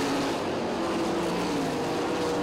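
World of Outlaws sprint cars' 410-cubic-inch V8 engines running at racing speed on a dirt oval, a steady engine drone whose pitch drifts slightly as the cars pass.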